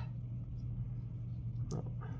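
A steady low hum of room tone with no other sounds, broken near the end by a short spoken "oh".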